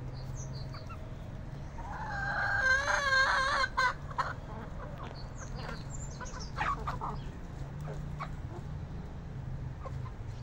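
A rooster crows once, a wavering call of about two seconds, followed by scattered short clucks from the chickens.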